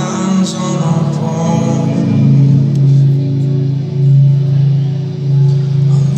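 Live rock band music with a man singing over acoustic guitar for about the first two seconds, then a low chord held and ringing on as the song closes.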